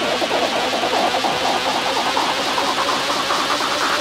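Psytrance: a buzzy synthesizer pulsing very rapidly and rising steadily in pitch, a build-up riser with little bass beneath it.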